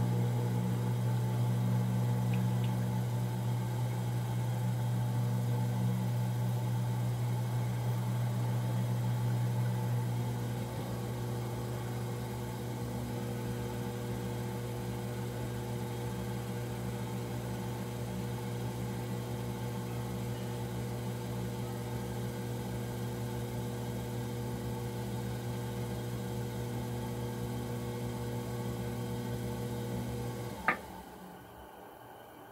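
Potter's wheel motor running with a steady hum while the wheel spins, easing a little in level about a third of the way in.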